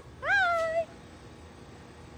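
A woman's voice calling out one drawn-out, high-pitched sing-song word, about half a second long, rising and then holding its pitch.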